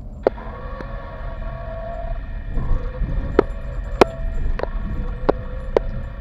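Inside a car driving over a rough, patched road: a steady low rumble of tyres and engine, with sharp knocks and rattles at irregular moments as it goes over bumps. Over it a sustained whining tone holds, shifting in pitch a few times.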